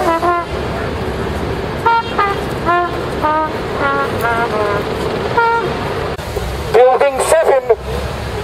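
Car horns honking from passing traffic: a string of short toots, about seven in the first six seconds. Near the end a man's voice comes in loud through a megaphone.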